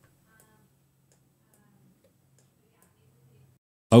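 Very quiet: a faint steady low hum with a few faint scattered ticks.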